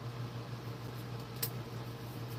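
A steady low mechanical hum, like a room fan, with one short, sharp snip about one and a half seconds in from scissors cutting a cannabis stem.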